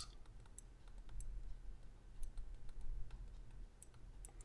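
Faint, irregular clicks and taps of a stylus on a pen tablet during handwriting, over a low steady hum.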